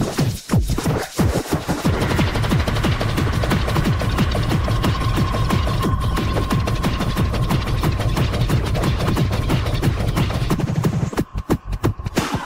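Gabba hardcore track blending frenchcore and hardstyle: a rapid run of hard, distorted kick drums over heavy bass with a held synth tone. The beat drops out briefly about half a second in and again just before the end.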